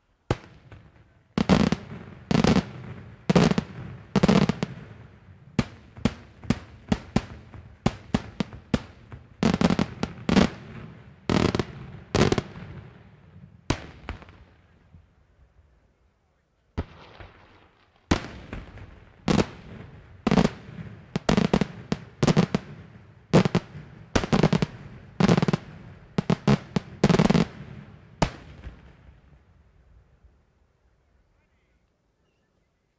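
Daytime aerial fireworks: a rapid series of loud shell bursts, often one or two bangs a second, each echoing. There is a short lull about halfway through before the bursts resume.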